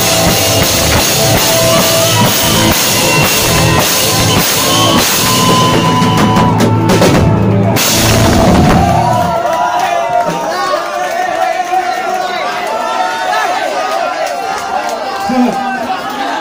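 Live punk band with drum kit and saxophone playing loudly, the song ending about nine seconds in. Crowd voices and shouting follow.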